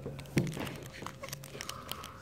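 Foil wrapper of a Pokémon trading-card booster pack crinkling softly in the hands, with scattered small crackles and clicks.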